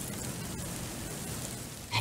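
A faint, steady hiss of background noise with no distinct events.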